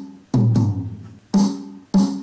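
Single drum hits from a GarageBand drum kit, played one at a time as notes are tapped into the drum pattern. There are three hits in about two seconds, each with a low tone that dies away over about half a second.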